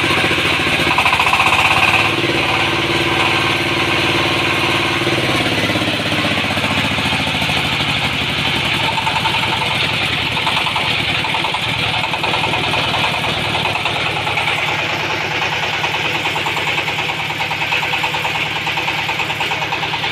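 Dongfeng S1110 20 HP single-cylinder water-cooled hopper diesel engine running steadily and loudly, with a fast, even beat.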